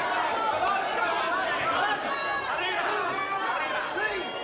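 A ringside crowd of spectators shouting and talking over one another, many voices at once.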